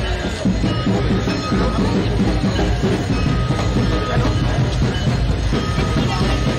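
Dense crowd noise: many voices talking at once over music, with a steady low rumble underneath and a few held musical notes coming and going.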